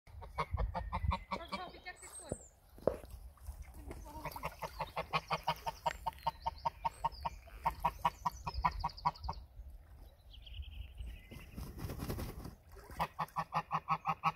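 Domestic white geese calling in quick runs of short, repeated honks, several a second, with pauses between the runs.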